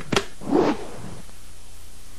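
Cartoon sound effects: a sharp crack just at the start, then a short swish about half a second in.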